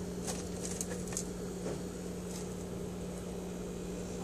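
A steady mechanical hum, with a few light clicks and taps in the first second or two as a small turtle is handled over a plastic tank.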